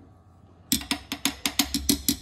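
Faint quiet for most of the first second, then a short burst of percussion music: quick, evenly spaced drum and wood-block hits, about seven a second.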